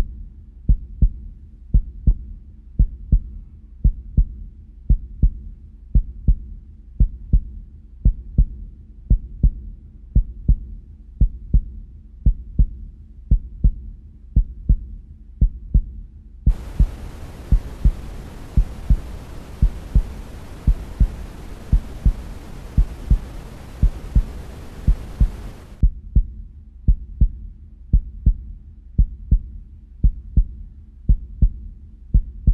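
Heartbeat sound effect: a steady low double thump, lub-dub, about once a second. Just past halfway a hiss like static joins it for some nine seconds, then cuts off suddenly.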